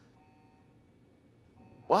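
Near silence: room tone with a few faint, steady high tones, then a man's voice begins at the very end.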